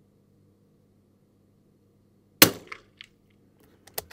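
A single shot from a Sako Quad Range bolt-action .22 LR rifle firing Eley match ammunition: one sharp crack about two and a half seconds in with a short tail, followed by a few light clicks.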